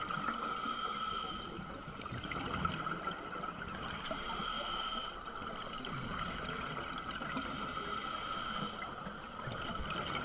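Underwater sound of a scuba diver breathing through a regulator: a rush of exhaled bubbles comes and goes about three times, every few seconds, over a steady hiss.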